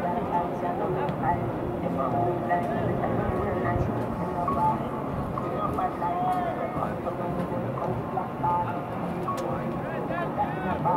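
Many indistinct, overlapping voices from players and spectators calling and talking during an outdoor soccer match, with no single clear speaker.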